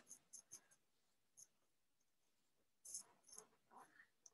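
Near silence, with a few faint short ticks and clicks: a handful in the first half-second and a small cluster about three seconds in.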